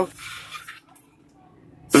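A utensil scraping and clinking in a small stainless-steel toy pot, during roughly the first second.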